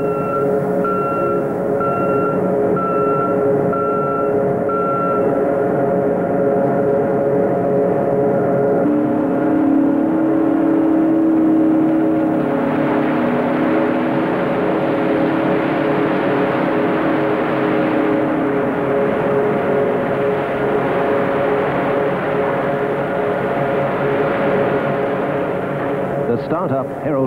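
Ore-plant primary crusher running with a steady machine hum. A beeper pulses about once a second for the first few seconds. From about halfway, a dump truck tips rock into the crusher, adding a rushing rumble of falling ore, with a lower drone for about ten seconds in the middle.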